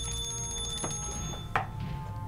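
A high metallic ringing of several pitches at once, bell- or alarm-like, that sets in suddenly and fades out after about a second and a half, over a low steady drone.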